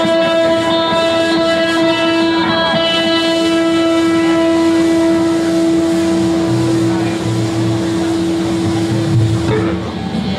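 Electric guitar and bass holding a final chord that rings on: the upper notes fade away over the first five seconds or so, while one low note keeps sounding until it is cut off just before the end.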